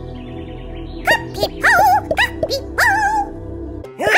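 Background music, the cartoon boombox's tune, plays under a cartoon character's wordless voice sounds. The voice gives about five short, high, gliding calls from about a second in. The music cuts off just before the end.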